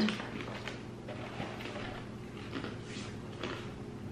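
Faint, irregular clicks and crunches of a crunchy almond-and-caramel snack bar being bitten and chewed, over a low steady hum.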